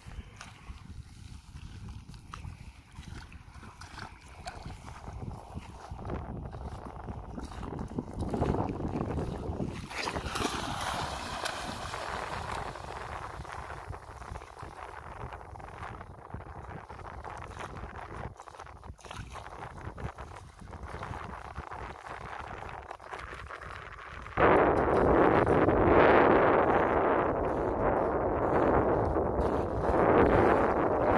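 Water splashing as a German shepherd swims and wades in shallow sea water, mixed with wind on the microphone; the wind noise jumps suddenly much louder about three-quarters of the way through.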